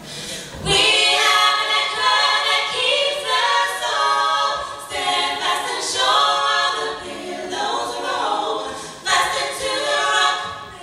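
A female vocal group of four singing a cappella, with no instruments. A new phrase starts about a second in after a brief breath pause.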